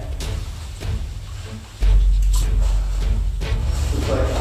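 A person scrambling down a rocky cave passage: a few scuffs and knocks on rock over a deep low rumble that jumps louder about two seconds in.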